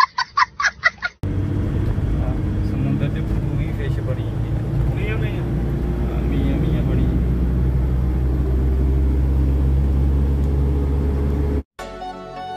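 A child's high-pitched laughter in quick bursts for about the first second, then the steady low drone of a truck's engine and road noise inside the cab while driving.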